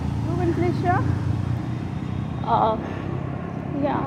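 Steady low rumble of street traffic, with short voice sounds over it.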